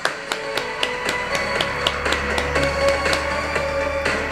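Background music with a steady beat of sharp ticks, about four a second, over sustained held tones; a deep bass tone comes in about halfway.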